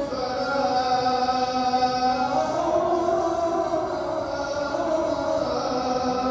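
A single man's voice chanting in Arabic over the mosque loudspeakers, holding long, slowly gliding notes.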